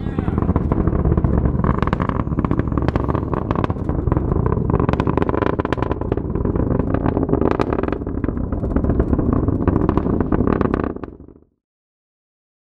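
Falcon 9 first stage's Merlin rocket engine firing during its landing burn: a loud, continuous crackling rumble that cuts off suddenly near the end.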